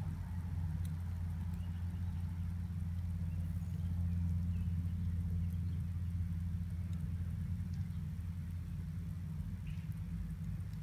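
A steady low hum that holds at one pitch, with nothing else standing out above it.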